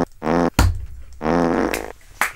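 Fart sounds, two low buzzing blasts: a short one just after the start and a longer one near the end, with a sudden heavy thump about half a second in.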